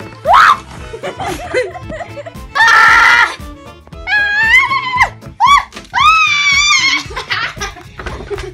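High-pitched screams and squeals from young voices: a quick rising shriek near the start, a harsh yell about three seconds in, then two long wavering screams, with music playing underneath.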